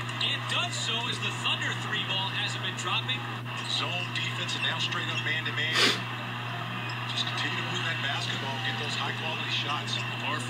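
Basketball highlights broadcast playing quietly in the background: a TV play-by-play commentator's voice with court noise, over a steady low hum. A single sharp knock sounds about six seconds in.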